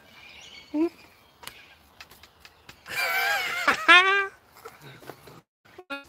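A person's voice, not words: a brief sound about a second in, then a drawn-out, high-pitched call about three seconds in that rises and falls, with a few light clicks between.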